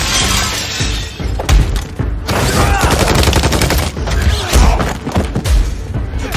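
Action-film sound effects: a soldier crashing through a window, impacts, and rapid gunfire, with the film's music score underneath.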